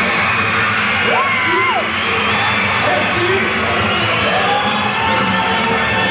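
Live concert sound: a band playing with a voice held over it, and the audience cheering and whooping.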